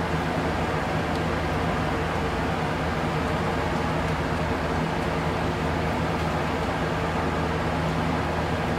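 Electric fans running: a steady rush of air noise with a low, even hum.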